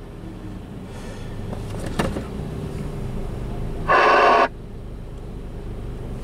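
Parked car's engine idling, a steady low hum heard from inside the cabin. There is a sharp click about two seconds in and a loud half-second burst of sound around four seconds in.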